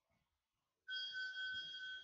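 A steady whistle of a few held high tones, starting suddenly about a second in and lasting nearly two seconds.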